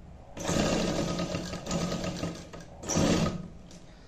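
Sewing machine stitching a zip into a suit's placket. It runs for about two seconds, stops briefly, then gives a second short burst about three seconds in.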